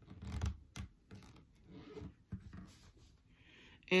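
Gathering thread being pulled through fabric, with short scratchy rasps and rustling as the fabric bunches up. The loudest rasp comes about half a second in.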